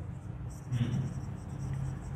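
Marker pen writing on a whiteboard: a run of short, faint, scratchy strokes as a word is written.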